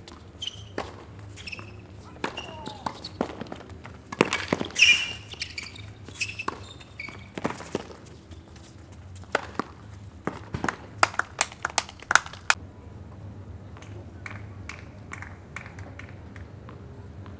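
Doubles tennis rally on a hard court: sharp knocks of rackets striking the ball and the ball bouncing, with short shoe squeaks early on and a player's short shout about five seconds in. A quick run of strikes follows between about nine and twelve seconds, then softer, sparser knocks near the end.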